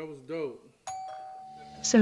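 A voice trails off, and just under a second in a single electronic notification chime sounds: one ding that rings steadily for about a second. Speech starts near the end.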